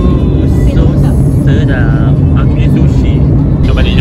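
Steady low road and engine rumble inside a moving car's cabin, with a few brief voice fragments and exclamations over it.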